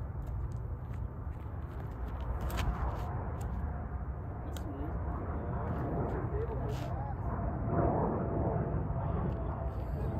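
Outdoor ambience: a steady low wind rumble on the microphone with faint, distant voices and a few light clicks.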